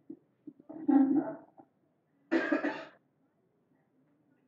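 A person coughing twice, the second cough sharper.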